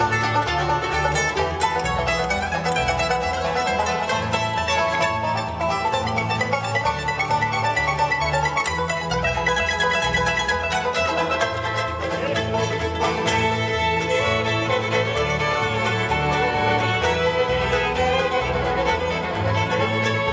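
A live bluegrass band plays an instrumental break with no singing. Banjo, mandolin, fiddle and acoustic guitar play together over a steady low bass line.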